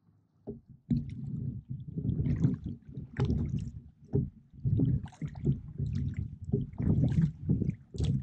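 Water sloshing and gurgling against the hull of a Feathercraft Baylee 3 HD inflatable rowboat as it is rowed, with irregular low rumbles and splashes of the oars. It starts about a second in after a brief lull.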